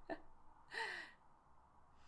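A woman's single short, breathy exhalation with a falling pitch, about a second in.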